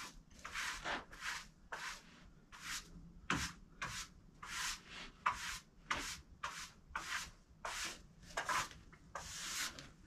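Sawdust being brushed off the face of a freshly sawn hardwood board: short, faint, scratchy sweeps at about two strokes a second.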